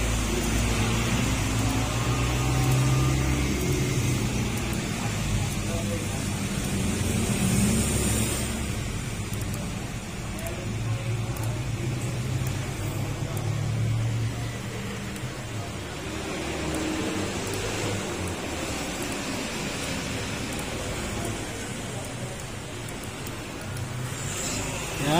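Indistinct background voices over a steady low rumble of ambient noise. The voices fade somewhat after the first two-thirds.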